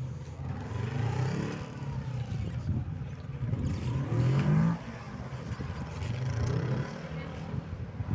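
Honda CB500F's parallel-twin engine rising and falling in pitch as the throttle is worked through slow cone manoeuvres. The loudest rev climbs about four seconds in and drops off sharply just before five seconds.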